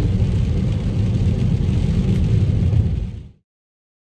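Road and engine noise inside a moving car's cabin on a rain-wet road: a steady low rumble with a lighter hiss above it, cut off abruptly about three seconds in.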